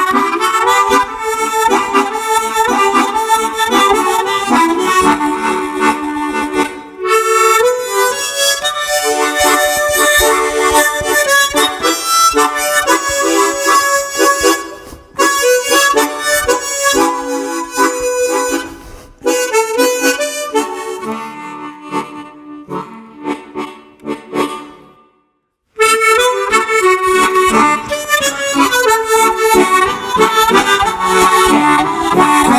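Tremolo harmonica playing a melody, several reed notes sounding together. About two-thirds of the way through the playing grows quieter and fades to a brief silence, then the tune comes back in at full level.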